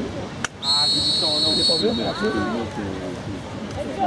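A referee's whistle gives one steady, high blast of just over a second, with voices calling around it.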